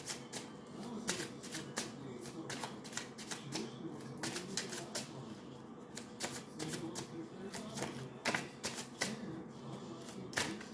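A deck of tarot cards being shuffled by hand, hand over hand. The cards slap and click against each other in quick, irregular snaps.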